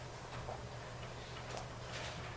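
Quiet room tone: a steady low hum with a few faint ticks and taps scattered through it.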